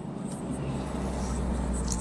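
Road and engine noise of a moving car heard from inside the cabin, building in loudness, with a deep low rumble setting in about half a second in.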